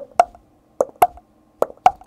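A person's mouth making short lip pops in three pairs, lub-dub, imitating a heartbeat.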